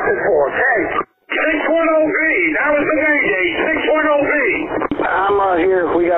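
Fire department radio traffic: narrow, radio-filtered voices over a two-way radio. There is a short break about a second in, and a different transmission starts near the end.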